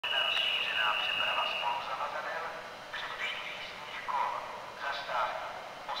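Station public-address announcement in Czech from the platform loudspeakers, the voice thin and tinny. A steady high tone sounds under it for about the first two seconds.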